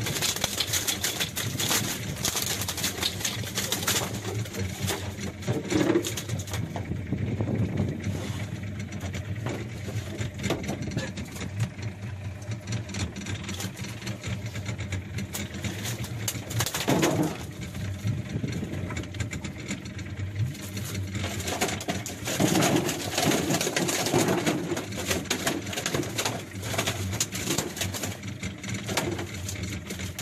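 Small boat engine running steadily at a low pitch, with scattered clicks and knocks over it.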